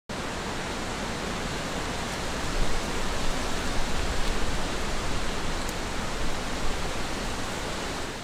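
Steady rushing noise, an even hiss like wind or distant rushing water, with no distinct events in it.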